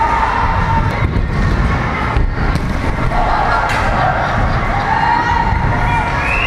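A few people shouting and cheering in a large echoing hall over a constant low rumble, with the loudest shouts from about three to five seconds in.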